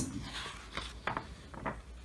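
A page of a picture book being turned, heard as a few light paper rustles and flicks.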